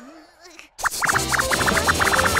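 Cartoon sound effects and comic music: a low wobbling tone fades out, there is a short gap, then a quick rising sweep leads into a fast run of short high blips, about ten a second, over a steady low hum.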